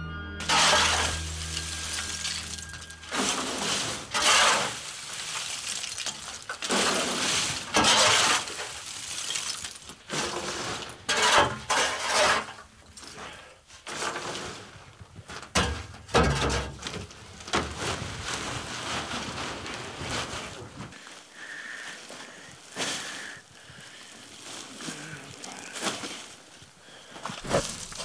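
Shovel scooping and tipping lumps of charcoal, a scraping crash with a glassy clinking of the pieces, repeated every few seconds; the crashes are quieter in the last few seconds.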